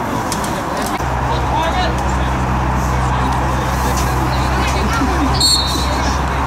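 Outdoor football-pitch sound: distant shouts from players over a steady low engine-like drone that sets in about a second in, with a brief high-pitched tone near the end.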